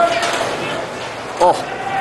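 A man's short exclamation, 'oh', about a second and a half in, over the steady background noise of a roller hockey game in a large indoor rink.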